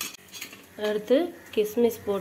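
A few light metal clinks of utensils against a small pan on the stove, then a voice speaking from about a second in.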